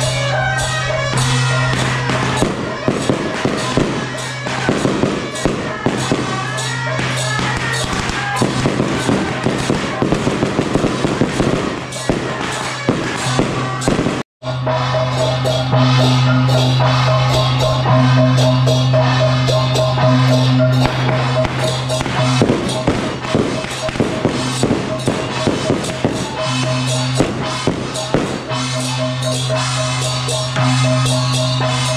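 Strings of firecrackers crackling in rapid pops over loud music that holds steady sustained tones. The sound drops out for a moment about halfway through, then the music carries on with further bursts of pops.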